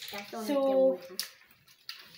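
A child's voice drawing out a single word, followed about a second in by a short sharp click, then near quiet with another click near the end.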